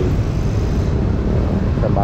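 Steady low rumble of busy street traffic heard from a running scooter, with no single event standing out.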